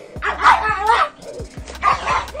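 A pug barking and yapping in two quick runs, the first about a quarter-second in and the second near the end.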